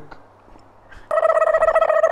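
A steady, fast-trilling electronic ringing tone, like a phone ring or buzzer sound effect, that starts about a second in and holds one pitch.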